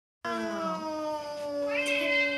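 Bengal cats meowing to be fed: one long, drawn-out meow starting about a quarter second in and sinking slowly in pitch, with a second, higher call joining near the end.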